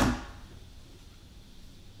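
A single sharp knock right at the start, ringing out briefly, then quiet room tone through the pause.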